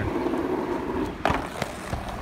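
Two-wheeled caster board rolling across asphalt, its small wheels giving a steady rumble for about a second, then a couple of sharp clacks as it comes to rest.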